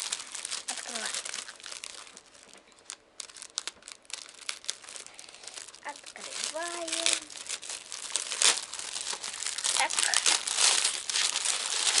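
Thin plastic wrapping film crinkling and rustling as it is handled and peeled off a tablet case. It goes quieter and sparser for a few seconds, then grows louder and busier in the second half.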